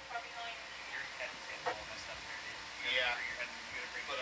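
Faint, indistinct voices with a thin, radio-like sound: background chatter over the control-room communications loop, louder briefly about three seconds in.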